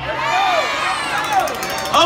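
Crowd of many people cheering and shouting back together, their voices overlapping.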